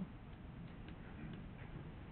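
Quiet room tone of a large meeting chamber: a low, steady background hum with a few faint ticks.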